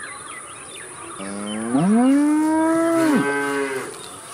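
A cow mooing once, starting about a second in: one long moo that rises in pitch, holds steady, then falls away at the end.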